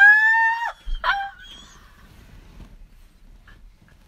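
A woman's high-pitched squeal of laughter: one long held note of about a second, then a short second squeak, followed by only faint background noise.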